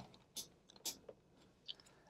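Faint clicks of a digital multimeter's rotary selector dial being turned through its detents to the 20 V DC range: about four small, separate clicks.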